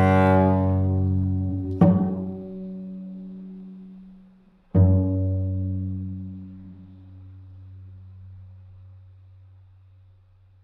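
Solo cello ending a piece: a held bowed note fades away, then two plucked pizzicato notes about three seconds apart, each left to ring and die away. The second, lower note rings on and fades almost to silence, closing the piece.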